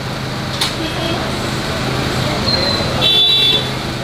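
Busy street-market ambience: a steady background of voices and traffic noise, with a short high-pitched toot about three seconds in.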